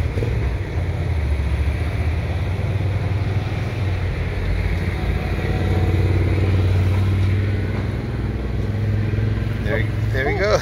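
Steady low engine rumble that swells a little in the middle and eases off again.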